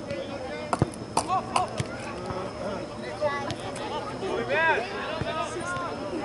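Shouted calls from soccer players and people on the sidelines, with a few sharp thuds of a soccer ball being kicked. A louder, drawn-out shout comes a little before the end.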